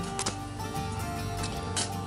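Background music with steady held notes and a couple of faint clicks.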